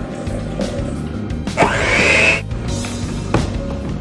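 Background music, with an electric hand mixer running briefly, for under a second, about halfway through.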